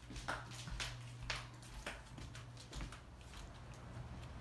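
Footsteps on a wood floor and the handling of a blind-covered door being opened: about a dozen irregular light knocks and clicks over a steady low hum.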